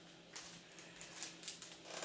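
Faint handling noise of Magic: The Gathering cards and a booster pack wrapper: a scatter of light clicks and rustles.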